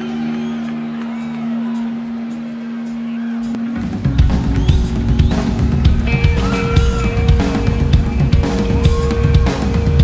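Rock band playing live in an arena, heard from the audience seats. A single note is held for about three and a half seconds, then the drum kit comes in with a heavy, busy beat of bass drum, toms and snare under the held notes.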